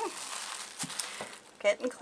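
Rustling and crinkling of the table covering as a glass bottle is slid and turned round on it, with a few light clicks.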